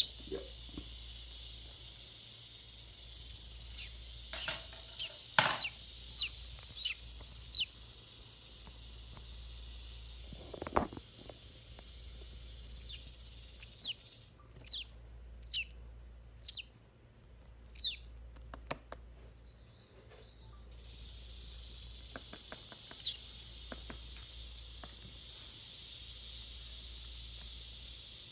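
A young chick cheeping in short, high single calls while held in a Gaboon viper's jaws, the distress calls of envenomated prey. The calls come in clusters, with a couple of rustles from its struggling, and thin out to a lone cheep toward the end.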